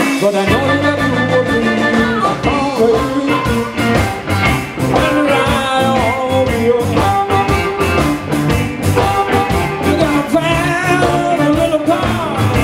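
Live electric blues band playing an instrumental passage. An amplified harmonica, played cupped against a microphone, leads over electric guitars, bass and drums keeping a steady beat.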